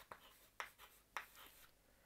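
Chalk writing on a chalkboard: a few faint, short strokes and taps, about one every half second.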